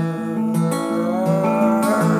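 Acoustic guitar strummed in a steady rhythm under a man's long held sung note.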